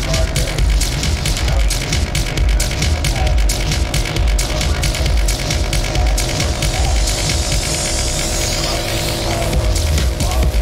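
Hard techno playing in a continuous DJ mix: a heavy kick drum and a dense run of hi-hat ticks over held synth tones. A hissing noise sweep builds in the high end from about seven seconds in.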